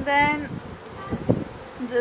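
Honeybee buzzing close to the microphone, one steady buzz in the first half second, then a few light knocks.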